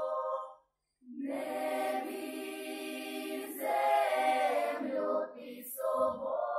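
Children's folk choir singing a cappella in close harmony. A held chord breaks off just after the start, and after a short silence the choir comes back in on a new phrase.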